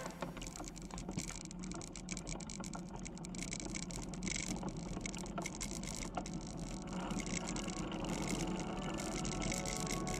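Action-camera sound of a mountain bike rolling on a concrete road: steady tyre and wind noise with frequent small clicks and rattles from the bike.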